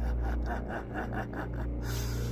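A person's breathy, rapid laugh of short evenly spaced pulses, about seven a second, over a low, steady music drone.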